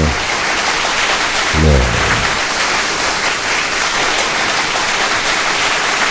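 Crowd applause, a dense steady wash of clapping that cuts off suddenly near the end. A voice calls out briefly about two seconds in.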